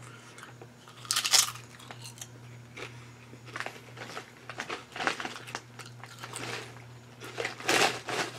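A potato chip bitten with a crunch about a second in, then chewed with scattered small crunches; just before the end a plastic chip bag crinkles as it is handled. A steady low hum runs underneath.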